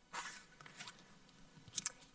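Faint rustling and scraping of a paper card being handled in a plastic pocket chart, with a short sharp click near the end.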